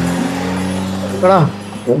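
Car engine running with a steady low hum. About a second and a quarter in, a short falling vocal exclamation cuts across it.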